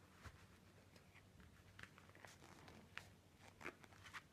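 Near silence with scattered faint rustles and small clicks as an Uhlsport Eliminator Bionik goalkeeper glove is pulled onto a hand and adjusted at the wrist.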